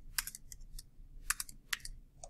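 Keystrokes on a computer keyboard: a run of about eight light, irregular clicks of typing.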